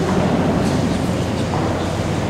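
Room ambience of a large, reverberant cathedral interior: a steady, echoing wash of low rumble and background noise, with a few faint ticks in the middle.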